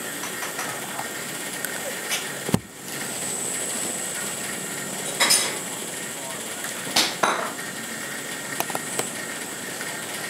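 A few sharp clicks and taps of small objects on a hard floor, the hardest about two and a half seconds in and another about seven seconds in, over a steady faint hiss.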